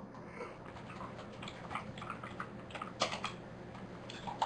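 Computer keyboard typing: a run of key clicks, with a louder cluster of keystrokes about three seconds in.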